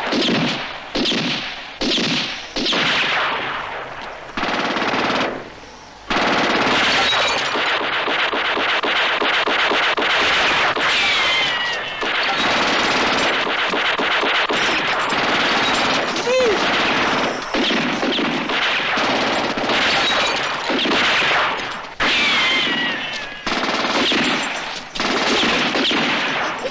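Film battle gunfire from automatic rifles and machine guns. Separate shots come in the first few seconds, then near-continuous bursts from about six seconds in, with a few falling whines through the firing.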